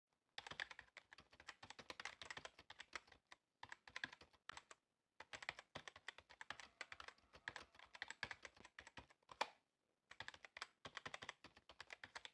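Faint typing on a computer keyboard: quick runs of key clicks with a few short pauses between them.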